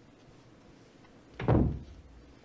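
A heavy door slamming shut once, a single deep thud about one and a half seconds in, over a faint room hush.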